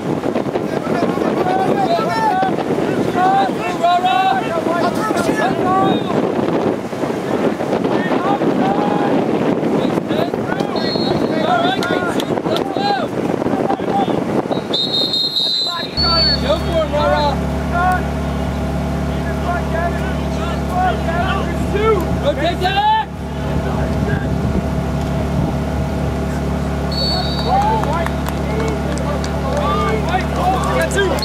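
Outdoor sound of a lacrosse game: scattered shouts and calls from players and spectators. About halfway through, a steady low motor-like hum starts suddenly and continues under the voices. A few short, high whistle blasts are heard.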